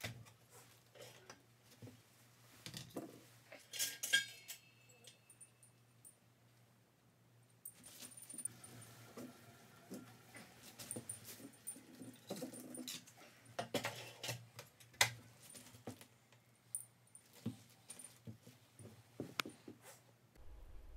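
Faint handling sounds at a liquid-nitrogen dewar: the lid is knocked and lifted, with scattered clicks and a ringing metallic clink about four seconds in. A low steady hum runs underneath.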